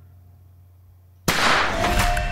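A sudden loud bang about a second in, from the TV show's soundtrack, followed by a dense, loud crash that carries on with faint ringing tones over it.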